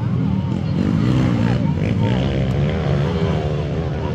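Motocross dirt bikes running on the track, engine pitch rising and falling, with people talking close by.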